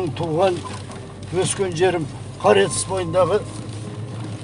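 A person's voice, with the steady low hum of a vehicle cabin underneath.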